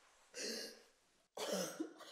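Two short, breathy, cough-like bursts from a person, the second starting abruptly about a second after the first ends.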